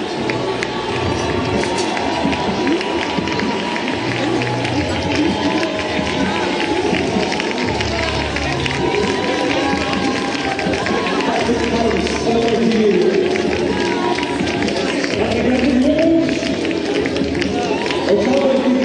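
Finish-line crowd noise: many voices and clapping, with music and voices underneath.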